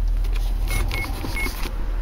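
Handling noise from a leather knife sheath and hands brushing and rubbing close against the microphone, heard as a low rumble with a rustling scrape. Three short high beeps sound around the middle.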